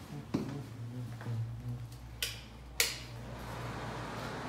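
Footsteps and handling clicks in a small tiled room over a low steady hum, with a short hiss just after the middle that ends in a sharp click, like a door being pushed open.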